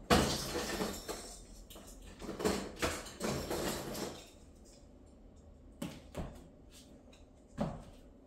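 Ornaments being rummaged through in a plastic storage tote: a busy run of knocks and rustles of plastic for about four seconds, then quieter with a few scattered clicks.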